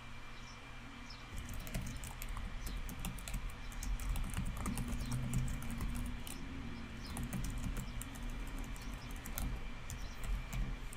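Computer keyboard typing as a password is entered: quick runs of key clicks starting about a second and a half in, pausing around the middle and picking up again near the end, over a low steady hum.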